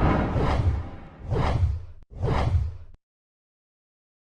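Three whoosh sound effects in quick succession, each swelling and then fading, with a low rumble under them.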